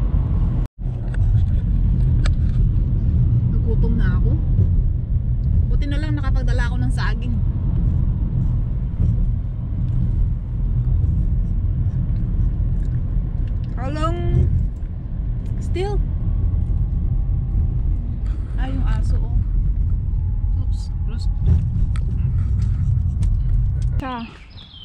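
Steady low rumble of a car being driven, heard inside the cabin, with tyre noise from a wet road. Brief snatches of a voice come and go over it.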